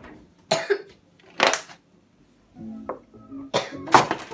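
Two short coughs in the first half, then background music coming in about two and a half seconds in.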